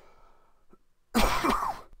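A man coughs once, a short, harsh cough a little over a second in.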